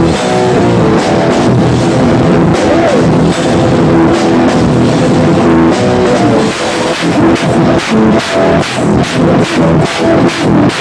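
Rock band playing live and loud, the drum kit close to the microphone with its snare and cymbals up front over the pitched instruments. In the second half the drums lay down heavy, regular accents about three a second.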